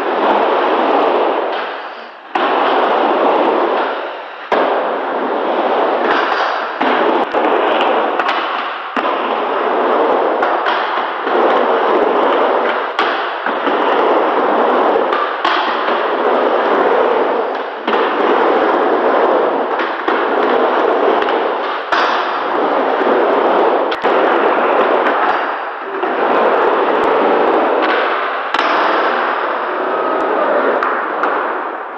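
Skateboard riding back and forth on a wooden mini ramp: a loud, steady rumble of the wheels on the plywood. Every one to three seconds the rumble is broken by sharp clacks and clangs from the trucks and board striking the coping and landing on the ramp.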